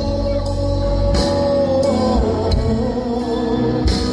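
Song with singing over guitar and a band; a long held vocal note wavers and dips a little about two seconds in.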